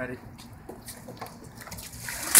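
Faint sloshing and a few small clinks of ice water shifting in a plastic bucket as it is lifted overhead.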